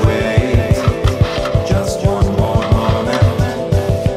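Background music with a fast, steady drum beat over sustained tones.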